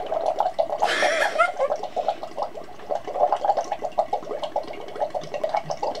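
Air blown through drinking straws into cups of water: a continuous run of rapid bubbling that never breaks, the steady airflow that circular-breathing practice aims for. A brief breathy hiss comes about a second in.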